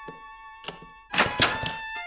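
Cartoon door sound effects: a latch clicks twice, then a louder, rough thump as the door opens, over held eerie music notes.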